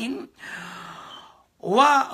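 A short spoken syllable, then one long audible breath of about a second that fades away before speech starts again.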